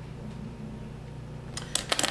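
A steady low hum, then a few quick sharp clicks near the end as a ballpoint pen is set down on the tabletop.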